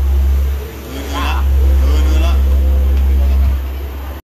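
A deep, steady rumble that is the loudest sound throughout, easing off near the end, with a person's voice speaking briefly about a second in and again about two seconds in.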